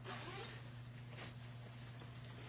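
Faint rustling of a band uniform's fabric as the jacket is moved on its hanger, with a couple of light ticks about a second in, over a steady low hum.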